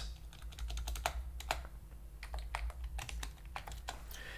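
Computer keyboard being typed on: a run of irregular key clicks as a short terminal command is entered.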